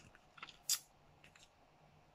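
A paper instruction leaflet being handled: a faint rustle, then a short, sharp crinkle of paper about three-quarters of a second in.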